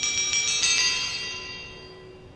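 Bright, bell-like chime of a Volvo commercial's logo sting: high ringing tones, with a second chime about two-thirds of a second in, both fading away together.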